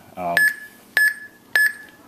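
Three short electronic beeps about 0.6 s apart from the Arduino rocket launch controller, each sounding as a key on its keypad is pressed to enter a launch code.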